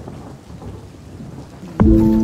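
A rough, rumbling noise with no clear tone, then background music cuts in abruptly near the end with sustained held notes.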